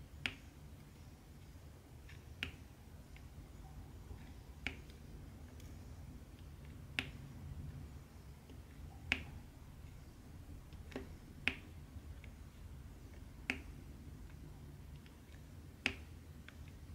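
Diamond-painting pen pressing round resin drills onto the canvas: sharp clicks about every two seconds, with fainter ticks in between.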